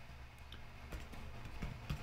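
A few soft, irregularly spaced computer-keyboard keystrokes, about half a dozen, over a low steady hum.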